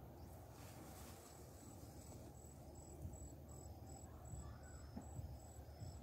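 Faint insects chirping in grassland: a train of short, high chirps repeating evenly a couple of times a second, joined about halfway through by a second, slightly lower chirper, over a low outdoor background hum.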